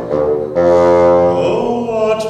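Bassoon playing a short phrase of long, low held notes, changing pitch about one and a half seconds in.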